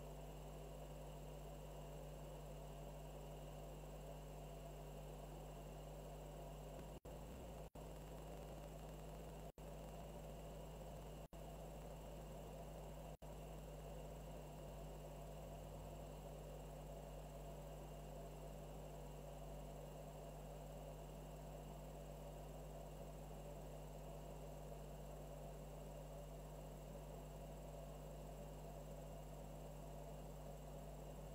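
Faint steady electrical hum and hiss of room tone, with five momentary dropouts where the sound cuts out for an instant, a quarter to halfway through.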